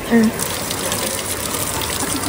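Wall-mounted outdoor shower running, water spraying steadily onto a person and the tiled wall.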